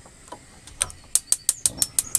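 Gas hob's spark igniter clicking rapidly, about six sharp clicks a second starting a little under a second in, as a burner is being lit.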